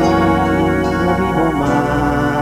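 Grupero band playing an instrumental passage, led by an electronic keyboard with an organ sound holding chords over a steady bass line.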